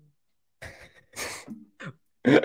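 A man laughing into a close microphone: after a brief silence, a few short, breathy puffs of laughter about half a second in, with a couple of short voiced chuckles near the end.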